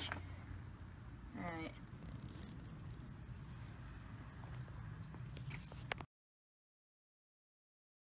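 Quiet outdoor background with a low steady hum, a few faint short high chirps, and a brief voiced sound from a person about one and a half seconds in. The sound cuts off abruptly about six seconds in, leaving silence.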